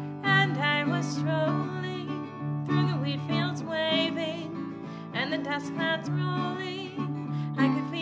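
A woman singing a folk song to her own acoustic guitar accompaniment, her held notes wavering with vibrato.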